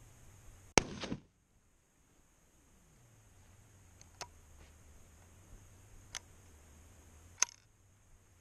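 A single shot from a 1916 Lee Enfield .303 bolt-action rifle about a second in, with a short echoing tail. Three sharp clicks follow over the next several seconds as the bolt is worked, the loudest near the end.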